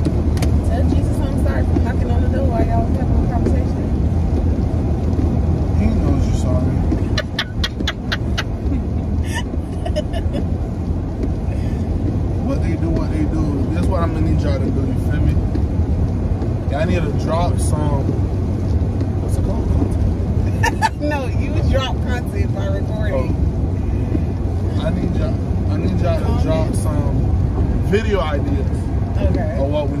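Steady low rumble of road and engine noise inside a car's cabin while it is being driven, with a quick run of clicks about seven to eight seconds in.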